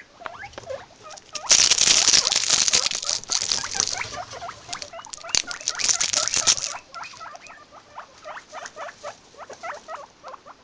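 Guinea pigs squeaking in many short, quick calls, a few a second, with a loud rustling of hay and bedding from about a second and a half in until nearly seven seconds.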